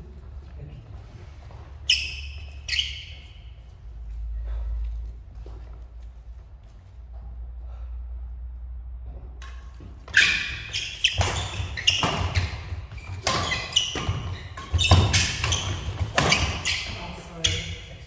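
Badminton doubles rally on an indoor court, with racket strikes on the shuttlecock, shoe squeaks on the floor and footfalls echoing in a large hall. Two short squeaks come about two seconds in, and the hits and squeaks come thick and fast through the last eight seconds.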